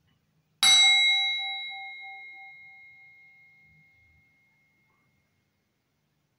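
Hammered metal singing bowl struck once with a wooden striker about half a second in, ringing out with several clear tones that fade over about four seconds; the lowest tone pulses as it dies away.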